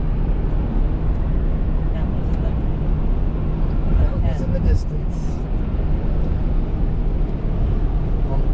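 Steady low rumble of a car at highway speed heard from inside the cabin: engine and tyre noise on the pavement.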